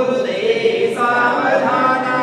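Several voices singing a Hindu devotional chant together, a continuous melodic line that rises and falls with a brief dip about a second in.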